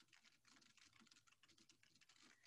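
Near silence with faint, rapid keystrokes of computer keyboard typing.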